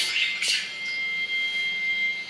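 A steady high-pitched tone holding one pitch, with a short hiss about half a second in.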